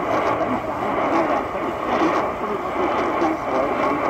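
Medium-wave AM broadcast on 1540 kHz playing through the Qodosen DX-286 portable radio's small speaker: indistinct, muffled speech buried in steady static from a weak station.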